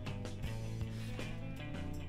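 Instrumental background music with sustained notes over a light regular pulse.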